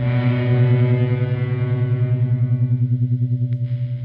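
Noise rock: a loud, sustained electric guitar drone through effects, a low note struck at the start and held with a fast, even wavering pulse.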